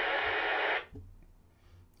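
Handheld two-way radio hissing with steady open-squelch static from its speaker, then cutting off suddenly just under a second in.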